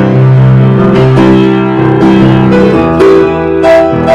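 Piano playing a slow worship hymn in full chords, held notes ringing and overlapping as the chords change.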